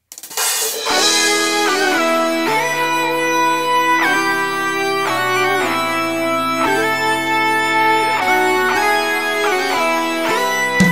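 A band starts up from silence with a cymbal crash, then electric guitar chords held over bass notes, changing every second or so.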